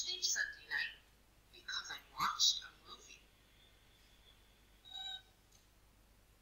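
A cartoon robot's voice: one short electronic beep near the end, a steady chord of pure tones, as a questioning reply.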